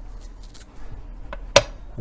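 A single sharp knock about one and a half seconds in, with a couple of fainter ticks before it, from a leather boot being handled on a bench-mounted boot stretcher, over a low steady hum.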